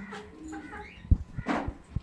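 Handling noise: a sharp knock about a second in, then a louder rustling scrape, with a short pitched call that rises and falls early on.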